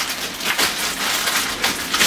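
Clear plastic bag crinkling and rustling in irregular crackles as it is pulled up off a laser printer.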